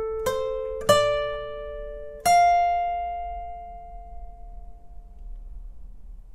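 Acoustic guitar played one note at a time in a slow arpeggio: three picked notes, each a little higher in pitch than the one before, within the first two and a half seconds. The last note is left to ring and fades out over about three seconds.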